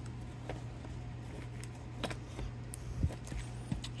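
A few faint clicks and taps as a plastic-bodied fuel injector and its O-ring are handled against a metal fuel rail, over a steady low hum.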